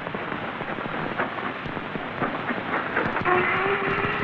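Steam locomotive, an LMS Coronation-class Pacific, at rest: a steady hiss of steam with scattered clanks and knocks, joined about three seconds in by a steady pitched tone.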